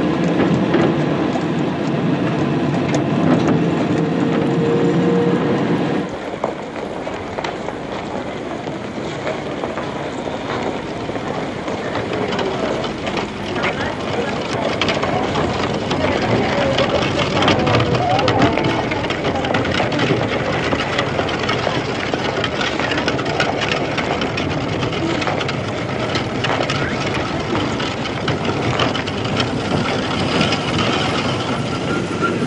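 Busy street ambience: a murmur of voices without clear words, over the rumble and clatter of traffic. The low rumble drops away abruptly about six seconds in, and the sound goes on thinner and more even.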